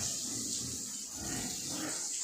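Landrace pigs grunting low and now and then, under the steady hiss of a hose spraying water over them in the pen.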